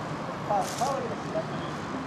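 Short, indistinct calls from players' voices about half a second to a second in, over a steady low hum of city traffic.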